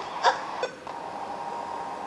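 Two short button beeps from the parent unit of a Motorola MBP38S-2 video baby monitor as the view is switched to the other camera, followed by a faint steady tone.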